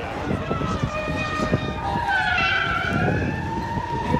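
A siren wailing, its pitch gliding slowly up and down and growing louder about halfway through, over background chatter.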